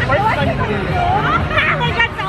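Close, excited voices talking and laughing over the babble of a crowd.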